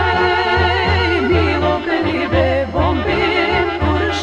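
A woman singing a Macedonian folk song in a wavering, ornamented voice over a band with a steady bass beat.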